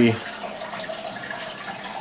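Steady splashing and bubbling of water circulating in a home aquarium.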